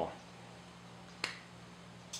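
A single sharp click a little past a second in, over a faint steady low hum. The tail of a spoken word fades out at the very start.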